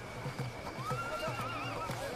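A horse whinnying: one wavering call of about a second, starting a little before the middle. Under it runs a steady string of low thuds, about four a second.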